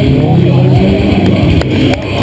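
A motorcycle engine running and revving during a stunt run, with a person's voice over it.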